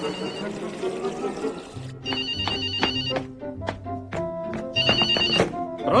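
Telephone ringing in three short, rapidly trilling bursts, about two and a half seconds apart, over background music.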